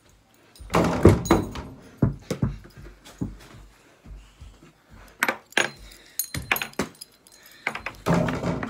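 A series of irregular knocks and rattles from small hard objects being handled close to the microphone, the loudest cluster about a second in.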